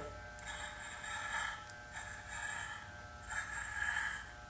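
Corded electric hair clippers buzzing faintly with a steady hum, cutting off a long beard; the rasp swells three times as the blades bite into the hair.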